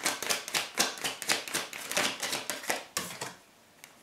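Tarot cards being shuffled by hand: a quick run of papery card clicks, several a second, that stops a little after three seconds.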